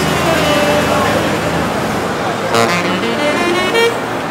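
City street traffic: a motor vehicle's engine running close by, its low rumble dropping away about halfway through, with snatches of people's voices on the sidewalk.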